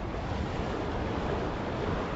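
Sea surf washing onto a fine-pebble beach, a steady rushing wash that swells slightly, with wind rumbling on the microphone.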